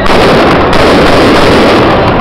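A loud, rapid crackle of gunfire.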